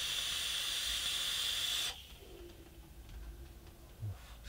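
Steady hiss of a Footoon Hellixer rebuildable tank being drawn on while its 0.23-ohm coils fire at 55 watts: air rushing through the open airflow over the hot coils. The hiss cuts off about two seconds in, and a much quieter exhale follows.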